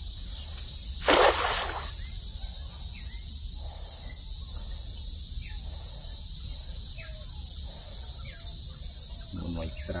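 A cast net splashing into a shallow creek about a second in, a short noisy splash, over a steady high drone of insects.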